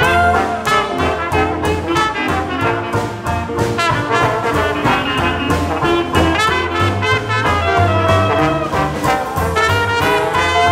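Traditional jazz band playing together: trumpet, clarinet and trombone over piano, string bass and drums, with a steady swing beat.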